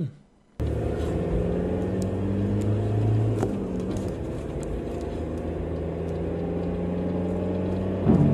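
Car engine running steadily, heard from inside the car as a low rumble and hum, cutting in abruptly about half a second in.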